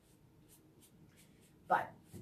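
Faint, quick swishes of a paintbrush stroking paint onto a painted wooden cabinet door, a few strokes each second.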